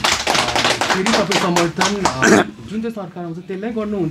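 A man speaking at close range into the microphones. His words were not transcribed, likely because he is talking in a local language. He speaks loudly for the first two and a half seconds, then more quietly.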